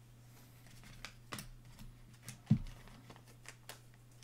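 Trading cards and foil packs being handled on a tabletop: a few soft taps and clicks, with a low thump about two and a half seconds in, over a steady low hum.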